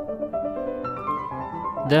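Piano music: a run of sustained notes, changing pitch every fraction of a second, over held lower tones.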